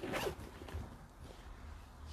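Faint room noise with a brief rustle right at the start.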